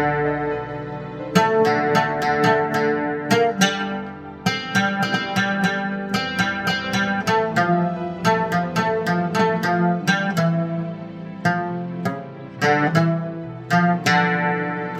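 Oud playing a slow instrumental melody in plucked notes, several a second, with lower notes ringing on beneath.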